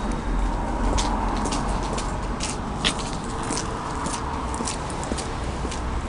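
Elevator running: a steady low rumble with light clicks and ticks scattered through it, and one sharper click about halfway in.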